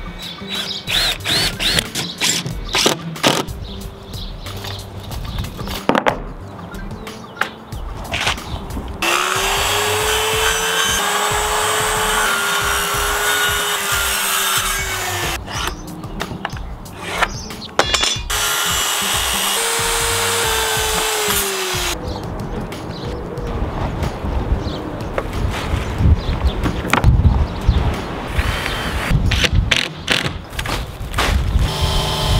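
Power tools under background music. At first a cordless drill drives screws in short bursts. Then a circular saw cuts plywood in two steady runs, about six seconds and about four seconds long, its motor tone rising as it spins up and falling as it winds down.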